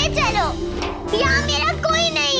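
A young girl crying out twice, high-pitched, each cry falling in pitch, over a steady background music score.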